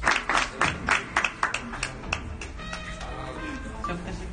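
A small group of people clapping quickly for about the first two seconds, then thinning out, over background music.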